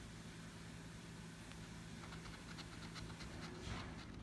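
A coin-type scratcher rubbing the latex coating off a scratch-off lottery ticket in quick short strokes, about four or five a second, starting about halfway through and strongest just before the end, over a faint steady low hum.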